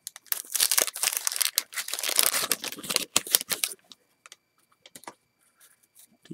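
Clear plastic wrapper of a 1986 Fleer baseball rack pack being torn open and crinkled by hand for about three and a half seconds, followed by a few faint clicks.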